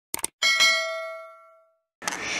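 Subscribe-button animation sound effect: a quick double click, then a bright bell ding that rings out and fades away over about a second and a half.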